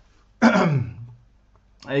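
A man clears his throat once, a short loud burst about half a second in that falls in pitch.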